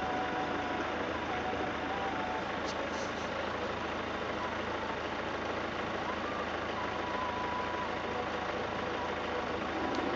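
Steady background hum and hiss with faint, thin wavering tones over it; no distinct event stands out.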